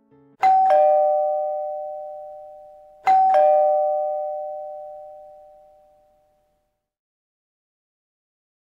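Two-tone doorbell chime rung twice, about three seconds apart. Each ring is a 'ding-dong', a higher note dropping to a lower one, and each rings out slowly.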